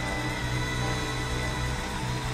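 Live band music: sustained chords over a steady bass line, with no voice.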